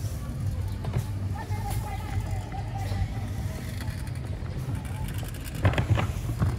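Busy city street ambience: a steady low rumble of traffic with people's voices in the background, and a short burst of sharp knocks near the end.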